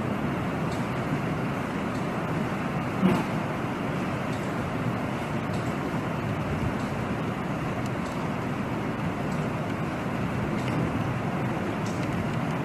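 Heavy rain falling steadily on a flooded street, an even hiss of rain and running water. There is a single brief knock about three seconds in.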